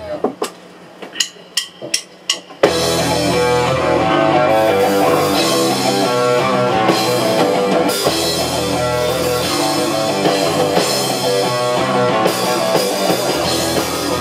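A few quick sharp clicks of a count-in, then about two and a half seconds in a punk rock band kicks in at full volume: distorted electric guitar, electric bass and drum kit played live in a small room.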